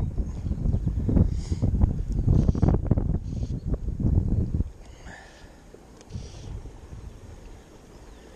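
Wind buffeting the camera microphone: a loud, gusty low rumble that drops off abruptly about halfway through to a much quieter steady hiss.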